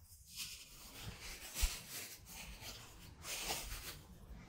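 Faint rustling of a thin plastic bag being handled and unwrapped, in a few short spells, the clearest a little after three seconds in.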